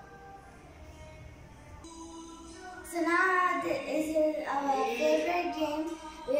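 A song with a high singing voice comes in about two seconds in and is loud from about three seconds on.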